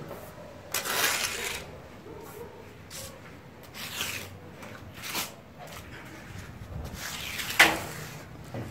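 Metal plastering trowel scraping and spreading a fine plaster finish coat onto a concrete ceiling, in five or six separate strokes, the loudest near the end.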